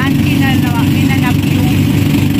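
Engine of a motorized outrigger boat (bangka) running steadily under way, a loud, even low-pitched drone.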